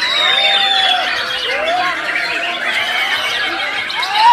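Many white-rumped shamas singing at once, a dense, steady tangle of loud overlapping whistles and pitch glides. One long high whistle stands out in the first second.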